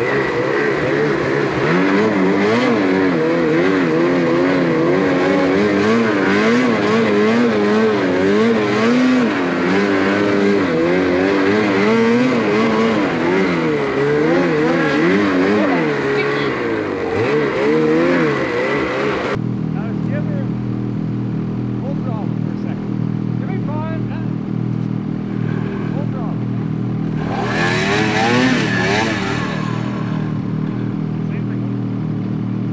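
Snowmobile engine pulling through deep snow, its pitch rising and falling with the throttle. About two-thirds of the way through the sound changes abruptly to sleds idling steadily, with one brief rev near the end.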